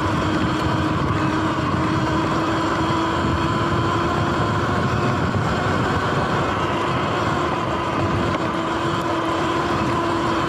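Sur Ron X electric dirt bike ridden fast on a dirt trail: a steady electric-motor whine that edges slightly up in pitch, over a loud rush of wind and tyre rumble.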